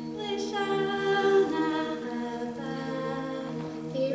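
Mixed-voice a cappella group singing unaccompanied, holding sustained chords over a steady low note, the harmony shifting slowly.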